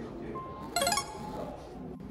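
A short, bright chime-like clink about three-quarters of a second in, just after a brief steady tone, over light background music.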